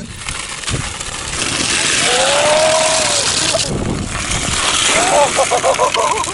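Homemade electric snowmobile's e-bike hub-motor wheel spinning and scraping on ice: a harsh hiss that cuts off suddenly about three and a half seconds in. A voice gives one long call in the middle and short shouts near the end.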